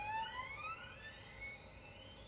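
Solo violin playing faint, high upward glissandi: several thin overlapping slides rising in pitch, fading out near the end.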